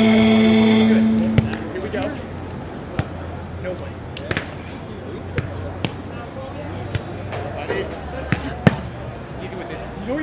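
A music track's held chord ends about a second in. After it come the sounds of a beach volleyball rally: a string of sharp slaps of hands and forearms on the ball, irregularly spaced, over a low steady hum and faint voices.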